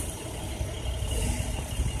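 Steady city street traffic noise, a low rumble of distant cars with no single event standing out.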